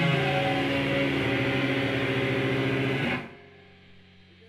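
Loud, dense distorted heavy music with electric guitar that cuts off suddenly about three seconds in, leaving a faint low hum.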